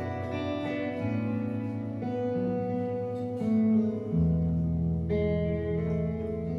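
Electric guitar playing a slow instrumental passage live: ringing, sustained notes that change about once a second, over low held notes.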